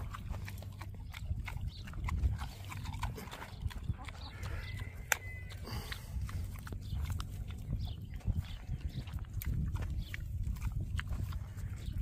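Pot-bellied pig eating at close range: snuffling and chewing, with many small irregular clicks and crunches.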